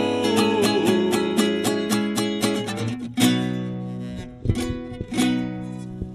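A viola caipira and an acoustic guitar strummed together in a steady sertanejo rhythm, about four strokes a second. About three seconds in they land on a louder closing chord, add two last strokes, and let it ring out and fade as the song ends.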